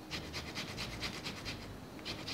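Lemon rind grated on a fine hand grater: quick, even rasping strokes, about six or seven a second.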